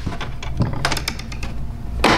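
A few light clicks and knocks of hard plastic as hands work the Hobie Mirage pedal drive in its well in the kayak hull, gripping it at its base.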